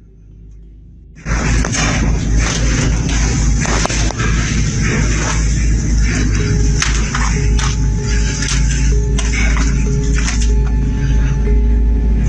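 Loud, distorted eerie noise from a phone recording, breaking in suddenly about a second in: a heavy low rumble shot through with crackles, with a faint steady tone, which people call demonic sounds.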